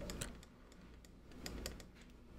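Faint, irregular light clicks of a stylus tapping on a pen tablet as words are handwritten, a few near the start and a quicker cluster in the second half.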